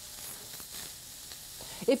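Flank steak sizzling steadily on a hot grill, with faint crackles as flame flares up at the edge of the meat.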